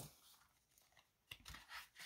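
Near silence, then a few faint rustles and clicks of laminated paper prop bills and binder pages being handled, starting a little over a second in.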